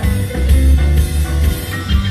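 Live band playing: drum kit, electric guitar and bass guitar in a bluesy song, here in an instrumental stretch without singing.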